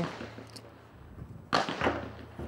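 A single sharp crack about one and a half seconds in, dying away over about half a second, after a fairly quiet moment with a faint low hum.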